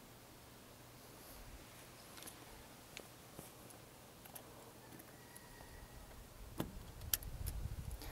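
Faint metal clicks and scrapes from a locking grease coupler on a grease gun being pushed at a recessed grease zerk, with a few sharper clicks near the end. The coupler is too big to seat on the recessed fitting.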